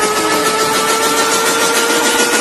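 A steady, engine-like drone whose pitch rises slowly and evenly over a noisy hiss.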